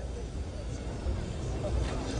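Steady low hum with a faint background hiss in a pause between a man's sentences into a microphone.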